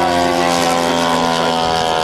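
Engine and propeller of a large radio-controlled model Meyers Little Toot biplane running steadily in flight, a droning note held at an even pitch.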